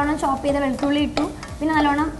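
Background music with a held, note-by-note melody, over a spoon stirring in a metal pot on the stove, with one sharp clink of the spoon about a second in.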